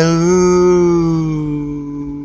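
A man's voice singing one long held note, unaccompanied, its pitch wavering slightly and slowly getting quieter toward the end.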